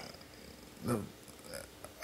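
A man's hesitant, halting speech in a pause: mostly quiet room tone, with a short murmured "the" about a second in and a faint sound from his voice shortly after.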